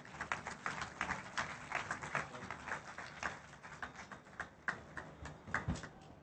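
Audience applauding, a patter of separate hand claps several a second that dies away near the end.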